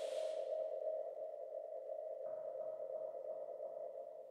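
The closing sustained synth drone of a dub techno track: a steady mid-pitched tone with a faint high whine, quiet and fading as the track ends. A breathy hiss dies away in the first half second, and a soft extra layer joins a little past halfway.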